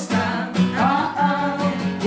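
Acoustic guitar strummed steadily while a woman sings along with it.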